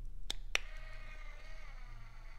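Two sharp clicks about half a second apart, then the faint steady whine of a small DC electric linear actuator's motor running, its pitch wavering slightly.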